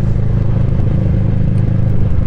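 Motorcycle engine running at a steady low speed in slow traffic, an even low drone that holds without revving up or down.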